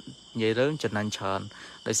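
Crickets chirping in a steady, high-pitched trill, with a man talking over them.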